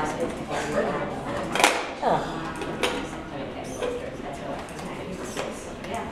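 Indistinct chatter of onlookers in a large hall, with a few sharp knocks: one about one and a half seconds in, another near three seconds and another near five and a half seconds.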